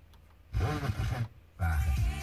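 FM car radio tuned to 103.4 MHz playing broadcast audio. After a short near-silent gap, two bursts of a deep, growling voice-like sound come through.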